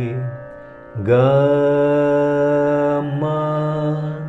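A man singing Carnatic swaras, the solfège syllables of a scale exercise, one long held note at a time. A note ends just after the start. About a second in he begins a held "ga", and near three seconds in he steps up to the next note of the scale.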